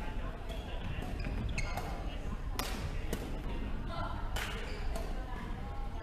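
Badminton rackets striking a shuttlecock in a rally, a few sharp hits spaced a second or so apart, ringing in a large sports hall.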